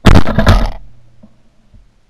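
A single very loud blast from a Franchi Affinity 3 semi-automatic shotgun fired at starlings overhead, picked up by a camera mounted on the gun. It hits at once and dies away within about a second.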